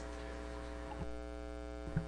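Steady electrical hum in a pause between speakers. It is a low drone with a row of higher buzzing tones, which grow fuller about a second in, and a couple of faint ticks.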